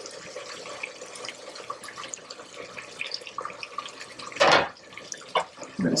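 Risotto rice and stock simmering in a pot on the stove, a steady sizzle and bubbling with faint crackles. About four and a half seconds in, a brief louder splash as a ladle of hot stock is poured into the rice.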